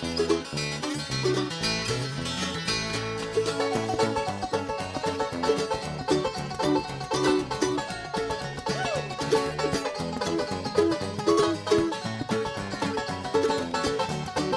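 Bluegrass band playing an instrumental: banjo picking fast runs over acoustic guitar, with bass notes underneath in the first few seconds.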